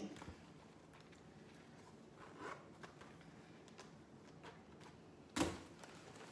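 Quiet handling noises: soft rustles and light taps of a leather-trimmed canvas wallet and other small goods being moved by hand, with one sharper knock near the end.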